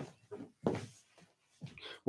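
A dog making a few faint, short sounds from another part of the house, the clearest a little over half a second in.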